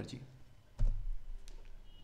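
A computer mouse clicked about a second in, a sharp click with a short low thud, followed by a fainter tick.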